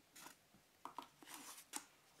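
Faint handling sounds: a few light taps and a soft rustle of the paper-wrapped package and cardboard box as the package is lifted out and set down on a wooden table.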